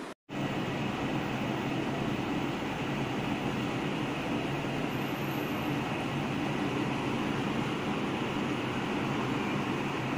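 Steady machine hum with a rushing noise, even throughout, starting abruptly after a brief dropout at the very beginning.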